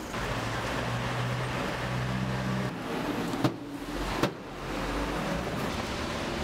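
Road traffic: a vehicle engine running with a steady low hum that drops away about three seconds in, with two sharp clicks shortly after, before the traffic noise returns.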